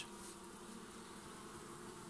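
Honeybees of a small split colony humming faintly and steadily over the open hive frames.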